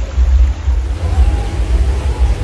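Wind buffeting the microphone: a loud, low rumble that keeps surging and dipping.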